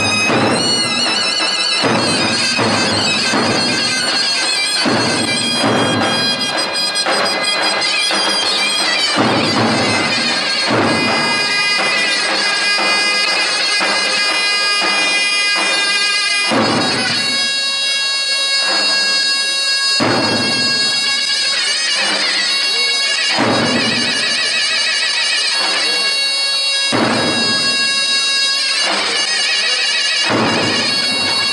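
Zurna, the Turkish double-reed shawm, playing a halay tune with a loud reedy tone, over davul drum strokes.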